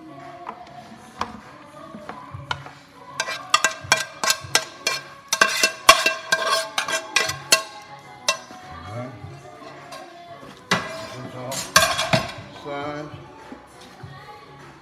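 A utensil scraping and knocking cooked ground beef out of a skillet into a plastic colander to drain the grease: a quick run of clinks and scrapes from about three to eight seconds in, and another burst near the end. Background music plays throughout.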